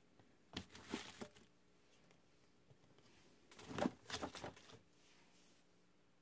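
Two plastic shampoo bottles set one at a time into plastic gift baskets packed with paper-shred filler: two short bouts of rustling with light clunks, about half a second in and again near four seconds.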